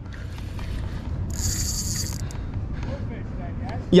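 Shimano Sustain spinning reel's drag buzzing for about a second as a hooked bluefish pulls line off against a light drag setting, over a steady low rumble.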